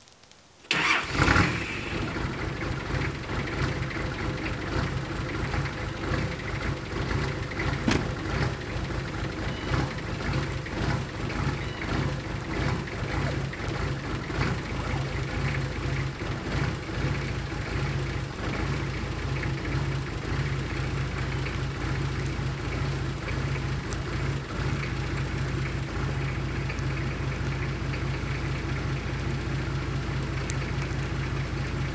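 A four-wheel-drive wagon's engine starting just under a second in, catching quickly, then settling into a steady idle.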